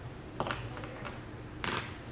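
Two short rustles of a paper hymnal being handled and its pages turned close to the pulpit microphone, over a low steady hum.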